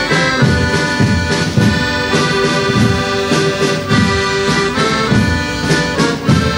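Accordion playing a chordal tune over snare and bass drums beating a steady march rhythm, about two beats a second: a live street band.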